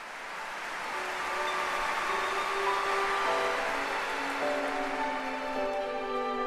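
Orchestra strings playing a soft opening of slow, sustained chords, the notes shifting every second or so and filling out toward the end. Under the first seconds lies a broad wash of audience noise that fades away.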